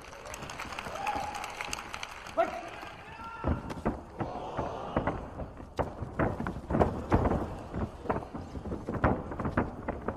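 Short shouts from voices in the hall over a run of sharp thuds and stamps: the fighters' feet moving on the ring canvas. The thuds come thickest in the second half.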